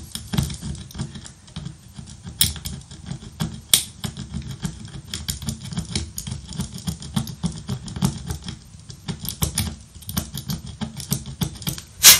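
Screwdriver tip scraping the bare pad of a removed LED on an LED bulb's circuit board, many quick, irregular scratches and ticks. The pad is being filed clean so a solder blob will make good contact.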